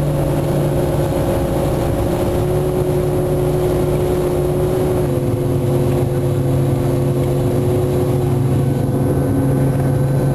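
Snowcat engine running steadily while driving, heard from inside the passenger cabin as a loud low drone; its pitch drops slightly about halfway through.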